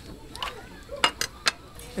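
Three sharp clinks of metal spoons on small sauce bowls, close together about a second in.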